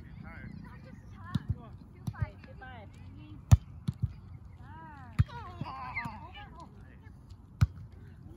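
A volleyball being hit by players' hands and forearms during a rally: a string of sharp slaps, the loudest about three and a half seconds in, with voices calling between them.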